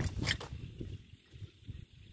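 A few clicks and rustles of handling on a plastic tarp, then a low, uneven rumble of wind on the microphone.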